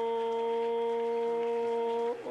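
A man's voice holding one long sung note at a level pitch, amplified through a microphone.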